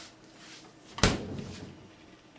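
Refrigerator door swung shut once about a second in, a single sharp thud.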